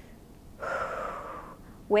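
A woman's audible breath through the mouth, about a second long, taken as a demonstration of how humans breathe with their lungs.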